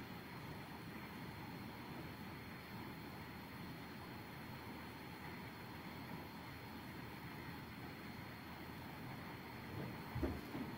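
Faint steady background hiss of a quiet room, with a thin high steady whine running under it.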